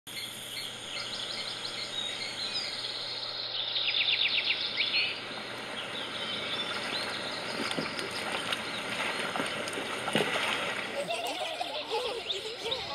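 Birds calling and chirping over outdoor ambience, with a fast chirping trill about four seconds in.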